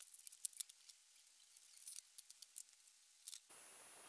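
Faint, scattered light clicks and ticks of hands working a plastic computer mouse apart, ending in a faint steady hiss near the end.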